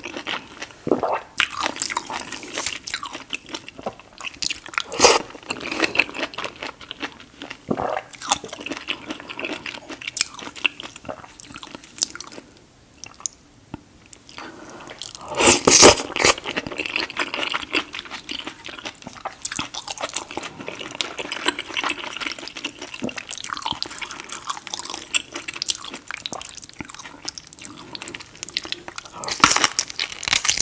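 Close-miked eating sounds: steady biting and chewing with wet mouth sounds as grilled pineapple and sauce-soaked seafood boil are eaten. After a short quieter lull a little before halfway, the loudest moment is a wet burst as sauce is sipped from a wooden spoon.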